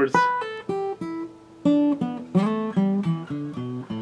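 Acoustic guitar playing the E minor pentatonic scale in fifth position one plucked note at a time, descending from the high E string to the low E string. The notes come about three a second, with a short pause after the first four.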